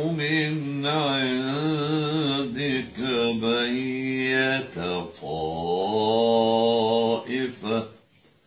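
An elderly man's voice reciting the Quran in the melodic tajweed style, holding long wavering notes with ornaments. There are short breaths between phrases, and the voice falls away just before the end.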